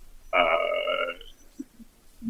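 A man's drawn-out filled pause, "uh", held on one steady pitch for about a second while he hesitates between phrases.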